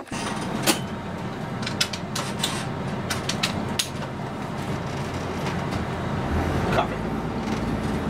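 Converted school bus engine running, heard from inside the cab, with scattered sharp clicks and knocks in the first few seconds. About six seconds in, the low engine sound grows stronger as the bus gets under way.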